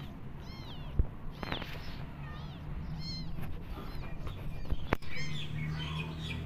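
A kitten mewing repeatedly, short high-pitched arching mews, as it goes to its nursing mother cat asking for milk. A few sharp knocks break in about a second in and again near the end.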